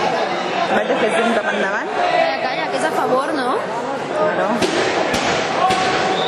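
Spectators chattering and calling out over one another in a large sports hall, with a couple of sharp knocks about five seconds in.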